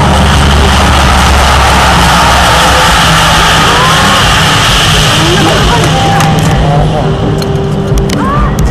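C-130H Hercules turboprops (four Allison T56 engines) running loud on the landing rollout: a dense, steady noise with a low drone that eases off after about six seconds as the aircraft moves away. Bystanders' voices can be heard over it.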